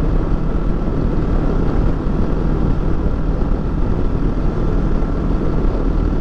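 Kawasaki Versys 650's parallel-twin engine running steadily at road speed, mixed with wind and road rush on the moving motorcycle.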